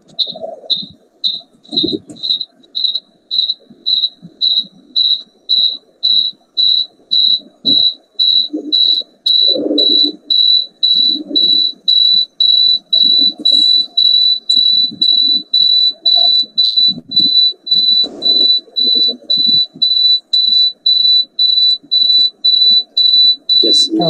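A high-pitched single tone beeping or chirping evenly about twice a second, running almost unbroken for a few seconds mid-way. A faint, muffled murmur sits underneath.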